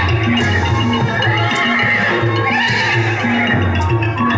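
Thai piphat ensemble music playing for khon masked dance: pitched mallet percussion and drums in a steady repeating pattern, with a reedy wind melody that swoops up and down again and again.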